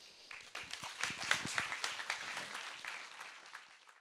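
Audience applauding, a dense patter of many hands clapping, fading out toward the end.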